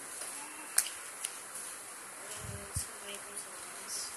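Cardboard jigsaw pieces being handled on a glass tabletop: a sharp click about a second in, a softer click just after, and a few low thumps near the middle as pieces are set down and pressed into place.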